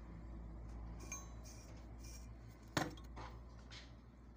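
Metal parts and tools of a water pump motor clinking as they are handled, with a few light clicks and one sharp metallic knock about three seconds in.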